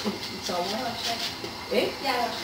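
Quieter voices talking, softer than the conversation just before and after. No other sound stands out.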